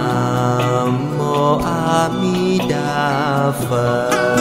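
Buddhist devotional music: a slow chanting voice over plucked strings.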